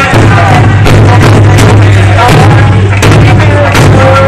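Okinawan eisa drummers beating large barrel drums with sharp, irregularly spaced strokes over very loud folk music with a sung or played melody.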